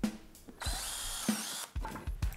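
DeWalt cordless drill with a countersink bit boring a countersunk pilot hole into a cedar slat. It runs steadily for about a second, starting about half a second in, then stops.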